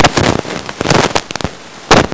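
Loud crackling and popping over the meeting's microphone system for about a second and a half, then one more sharp pop near the end.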